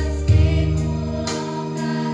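A group of girls singing a slow song together over amplified backing music with sustained chords and a deep bass that comes in about a third of a second in.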